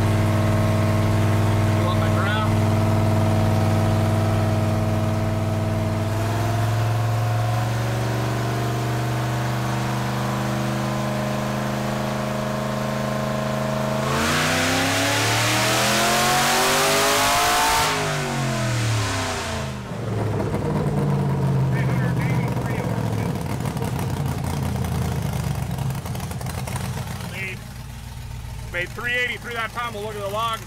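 Cammed 4.8-litre LS V8 in a first-gen Chevy S-10 running on a hub dyno for a tuning pull, heard from inside the cab: it holds steady revs, steps up slightly about six seconds in, then goes to full throttle about fourteen seconds in, revs climbing for about four seconds before lifting off and falling back to lower running.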